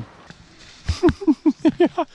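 A person laughing in a quick run of about six short bursts, each dropping in pitch, starting about a second in.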